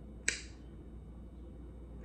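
One short, sharp click about a quarter of a second in, over faint room tone with a low hum.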